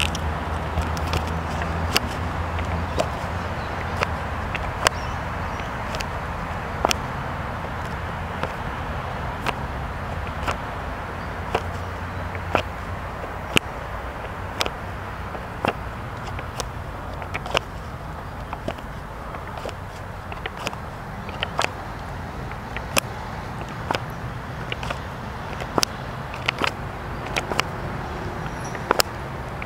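Pages of a large, heavy hardcover book being flipped quickly by hand, each page turn a short sharp flick, irregular at about one or two a second, over a steady low background rumble.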